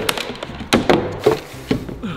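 Several knocks and thuds of hands and feet on a large black polyethylene storage tank as a man clambers onto its top, the plastic shell giving under his weight.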